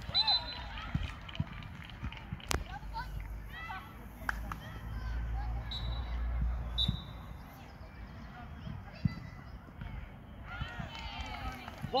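Outdoor youth football match: scattered shouts of children and adults across the pitch, with a sharp ball kick about two and a half seconds in and a low rumble of wind on the microphone in the middle.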